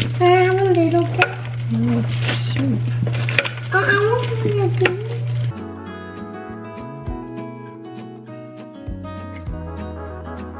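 A person talking over a steady low hum, with the clicks and scrapes of a potato masher working soft potatoes in a ceramic slow-cooker crock. About halfway through, this cuts to background music with held notes.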